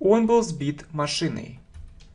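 Computer keyboard typing: a run of light key clicks through the second half, with a man's speech over the first part.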